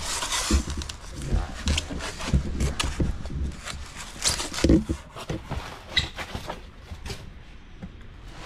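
Packing material rustling and crinkling, with scattered knocks and clicks, as a stoneware bowl is lifted out of its box; the loudest handling comes a little after halfway, and it quietens near the end.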